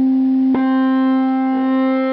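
Electric guitar note held and sustaining through a Fender Hot Rod DeVille tube amp, ringing steadily with a fresh attack about half a second in.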